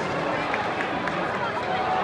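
Football stadium crowd: a steady mix of many indistinct voices talking and calling out, with no single voice standing out.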